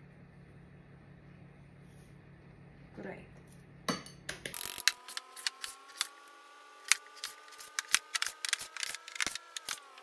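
Metal spoon stirring a thick oat-flour and Greek yogurt batter in a ceramic bowl: a run of irregular clicks and knocks against the bowl, starting about four seconds in after a quiet pour. Behind it a held tone slowly rises in pitch and drops off at the very end.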